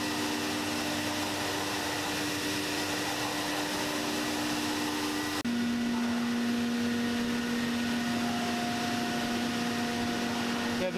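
Steady hum of a CNC router and its vacuum hold-down pumps, with a few steady tones in it. A little past halfway it cuts out for an instant and gives way to a slightly different steady machine hum.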